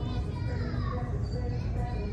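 Store background noise: faint distant voices, children's among them, over a steady low rumble.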